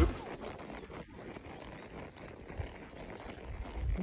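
Quiet outdoor ambience while a horse is ridden on a sandy track, with a few soft, low hoof thuds and faint high chirps in the middle.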